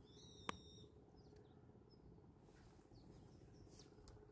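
Quiet outdoor ambience with a steady low hum. A short, high bird call sounds in the first second with a sharp click in the middle of it, and faint chirps follow later.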